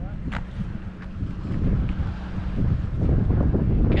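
Wind buffeting the microphone: a gusty low rumble that grows louder in the second half.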